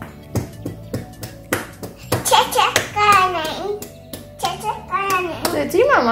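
A toddler's hands slapping a windowsill in a quick run of sharp taps, then high-pitched babbling and squealing from the toddler, with background music underneath.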